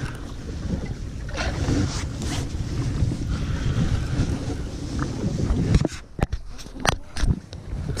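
Wind buffeting the microphone in a low, uneven rumble that eases about six seconds in, followed by a few sharp clicks and knocks.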